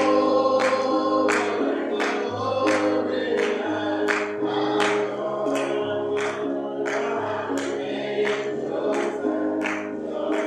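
Gospel singing by a choir or congregation, backed by a bass line that changes note every second or two and a steady beat of about one and a half strokes a second.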